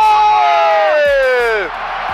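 A football commentator's long, drawn-out goal shout, held for about a second and a half and sliding down in pitch until it breaks off. A stadium crowd cheers under it and carries on after the shout ends.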